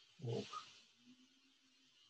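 A brief low vocal sound from a person, a short grunt-like noise about a quarter second in, then quiet room tone.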